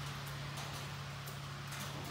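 Uncapping tool scraping the wax cappings off a honey frame: faint, irregular scratching and crackling over a steady low hum.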